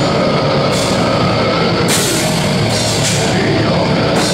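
Death metal band playing live: heavily distorted guitars, bass and drums in a loud, dense wall of sound, with cymbal wash coming and going.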